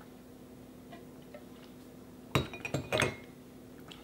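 Glassware of a champagne bong, a glass flute and glass tube, clinking against each other and the stand as it is set down: a quick cluster of sharp, ringing clinks about two and a half seconds in, after quiet.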